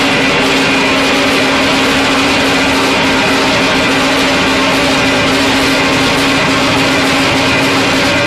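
Live band playing loud, distorted rock: a dense, unbroken wall of guitar and drums with a steady low note held almost throughout, fading shortly before the end.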